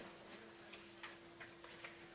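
Near silence: room tone with a faint steady hum and a few faint, scattered ticks.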